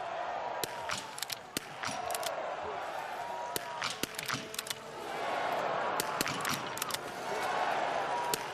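Biathlon .22 small-bore rifles firing in the standing position: two athletes side by side loose many sharp cracks at irregular intervals. Under the shots is a continuous murmur of spectators, which swells about five seconds in.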